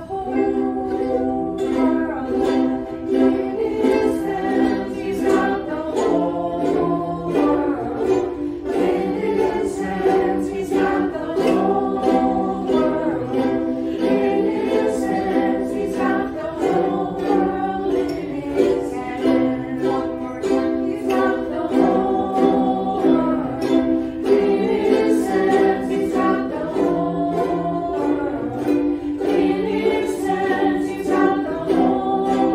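A group strumming ukuleles and singing together in a steady rhythm, the chords changing every few seconds.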